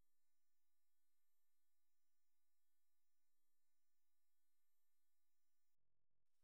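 Near silence: a very faint steady electrical hum.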